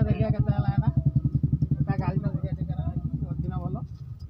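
An engine running close by with a steady, evenly pulsing low throb, voices talking over it; the throb cuts off shortly before the end.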